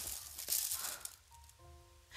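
Clear plastic film on a diamond painting canvas crinkling as it is handled, for about the first second. Faint held musical notes sound near the end.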